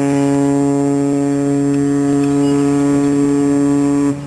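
Ship's horn sounding one long, steady blast that stops just at the end.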